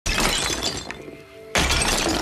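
Brittle objects shattering as they are smashed and swept off a table: one crash at the start that dies away, then a second crash about a second and a half in, over background music.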